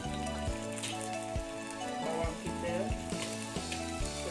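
Sliced onion, ginger and chilli sizzling as they fry in hot oil in a wok, under background music with a steady beat.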